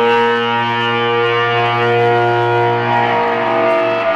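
Distorted electric guitars played live through amplifiers, holding one long sustained chord over a steady low note, with no drums under it. New notes strike right at the end.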